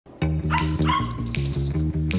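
A small dog whining at a door: one high cry about half a second in, rising at the start and then held for about half a second. It sounds over background music with a repeating low plucked bass line.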